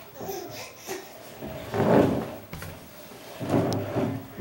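Small IKEA side table pushed across a hardwood floor, its legs scraping and dragging in two loud pushes, about two seconds in and again near the end.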